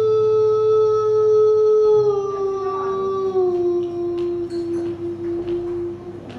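A woman singing one long held note that steps down in pitch twice and breaks off near the end, with acoustic guitar accompaniment.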